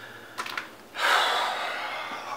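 A man breathes out heavily in one long, frustrated sigh, starting about a second in and slowly fading.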